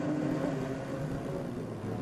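Engines of a pack of Dodge-powered open-wheel race cars running steadily as they pass through a corner, several engine notes overlapping.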